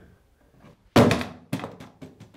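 Two heavy thuds about half a second apart, the first the louder, each ringing on briefly.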